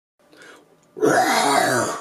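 A man's voice making a non-word vocal sound, like clearing his throat, starting about a second in and lasting about a second.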